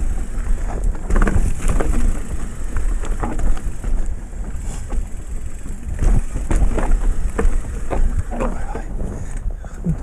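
Wind rumbling on the microphone, with the rattle and clatter of an electric mountain bike rolling over loose, fist-sized rocks on a singletrack.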